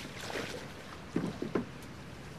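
Creaking of a wooden boat: a few short creaks, one about a quarter second in and three close together past the middle, over a low steady hiss.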